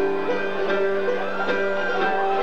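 Live band music: a banjo and a guitar picking notes over held, sustained tones.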